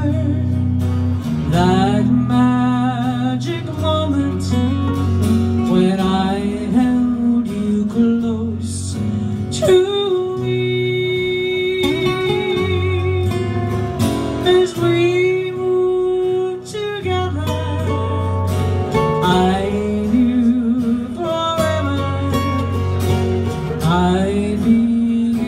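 Live country song: a woman singing held, wavering notes over two strummed acoustic guitars.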